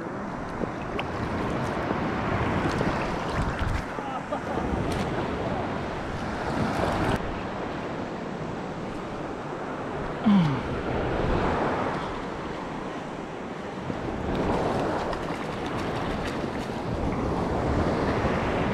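Surf washing and water lapping close to the microphone, with wind on the mic, swelling and easing. A brief sound that falls in pitch comes about ten seconds in.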